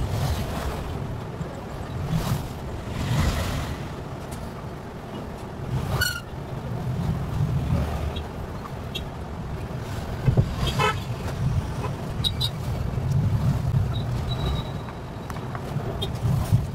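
A steady low background rumble, with a few short sharp sounds about six and eleven seconds in and a faint high tone near the end.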